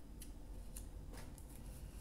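Tarot cards being drawn from the deck and laid on a tabletop: a few faint, light clicks of card stock.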